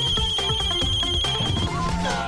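Background score music with a steady beat. Over it is a high, warbling electronic alarm-like tone, held for about a second and a half before cutting off.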